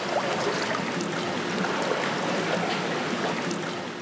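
Water rushing steadily along a water-ride channel, an even rushing noise that eases off slightly near the end.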